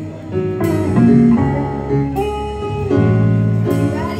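Live band playing: held notes and chords over a strong bass line, with sharp drum or cymbal hits about every one and a half seconds.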